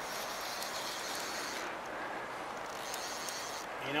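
Steady rushing of flowing river water, an even hiss with no rhythm.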